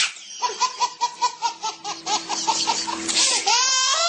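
A baby laughing: a quick run of short laughs, about five a second, then a high, rising squeal of laughter near the end.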